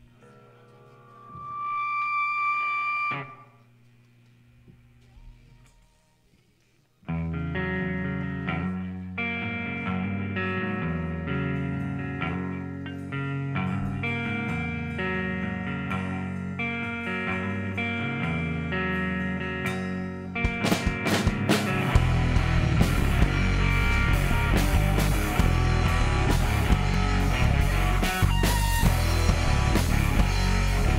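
Live rock band starting a song: a brief held tone early on, then an electric guitar riff begins about seven seconds in, and the drums and the rest of the band come in, louder, at about twenty seconds.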